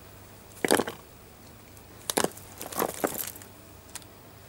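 Small items being put back into a handbag: a few short knocks and rustles as things land in the bag, about a second in and again between two and three seconds.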